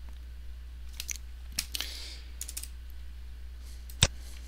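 A few computer keyboard keystrokes, scattered short clicks between about one and two and a half seconds in, then a sharper mouse click at the very end. A low steady hum runs underneath.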